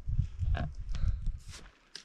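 Low, uneven rumble of wind buffeting the camera microphone, with a couple of faint rustles; it cuts off abruptly near the end.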